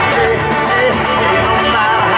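Live band music: strummed acoustic guitar and keyboards with a sung vocal line, the deep bass dropping out until just after the end.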